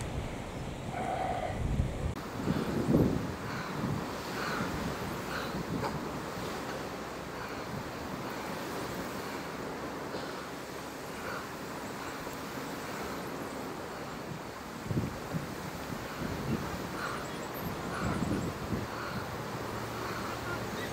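Wind buffeting the microphone over a steady hiss of sea surf, with stronger gusts about three seconds in and again late on.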